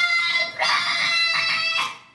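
A girl's acted, high-pitched wailing cries: one ending about half a second in, then a longer one held for over a second, stopping just before the end.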